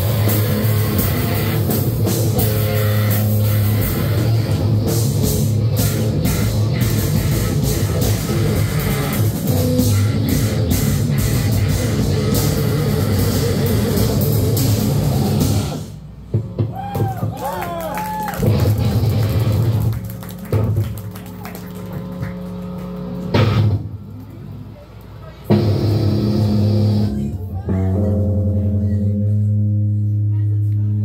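Powerviolence band playing live: distorted guitar, bass and fast drums at full volume with shouted vocals. About halfway through the band stops abruptly, leaving scattered drum hits, a few ringing notes and voices, then loud sustained low guitar and bass notes come back in near the end.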